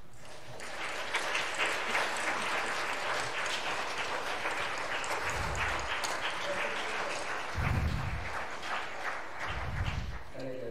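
Audience applauding: a roomful of people clapping, starting about half a second in and continuing steadily. Three low thuds sound through the clapping in the second half.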